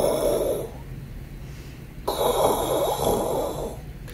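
A man making two heavy, raspy breaths into his microphone, the second one longer, imitating the masked killer's breathing through a gas mask.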